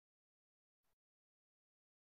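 Near silence: the audio is all but muted, with one very faint, short burst of noise just under a second in.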